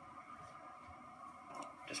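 Very quiet room tone with no clear sound event, ending in the start of a spoken word.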